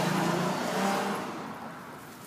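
A car engine running close by, its note rising briefly and then fading away over the second half, like a car moving off or passing in a parking lot.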